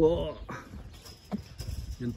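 The end of a man's repeated, chant-like call, followed by a quieter stretch of outdoor background with a single sharp click a little past one second in.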